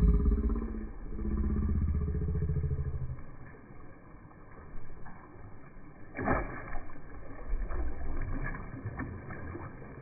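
Muffled splashing of a largemouth bass striking at food held at the pond's surface: a low drawn-out sound in the first three seconds, then a sharp splash about six seconds in, followed by smaller splashes.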